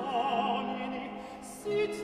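Early-Baroque vocal music: a singer holds a note with wide vibrato over a sustained low continuo note, the sound dies back, and a new, louder note enters near the end.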